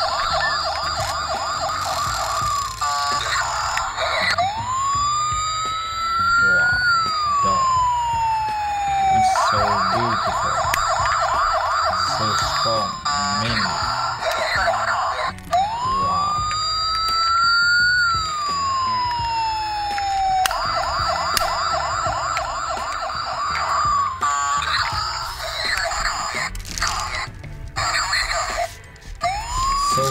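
A toy police car's electronic siren sound effect, going round about every ten seconds: a fast warbling yelp for about three seconds, then a slow wail that rises and falls. Scattered clicks of the plastic toy being handled sound over it.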